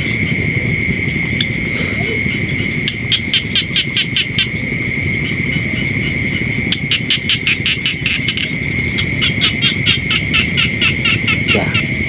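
Night-time chorus of insects and frogs: a steady high-pitched drone, with three spells of rapid pulsed calls at about eight pulses a second, over a low rumble.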